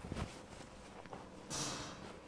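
Quiet handling sounds as a towel is settled around a person's neck, with a faint click at the start and a short hiss about one and a half seconds in.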